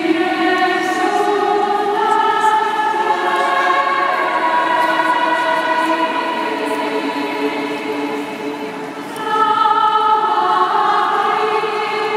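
A choir singing slow, sustained chords, the voices holding long notes and moving to new chords every couple of seconds, with a louder new phrase entering about nine seconds in.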